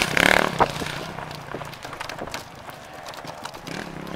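Enduro dirt bike's engine fading quickly as it speeds away after passing close by, its rear tyre throwing up grass and soil. It is loud at first and dies down over about two seconds, leaving a faint noisy background with scattered small ticks.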